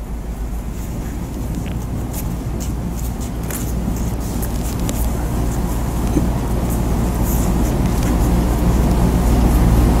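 Low rumbling noise that grows steadily louder, with a few faint clicks.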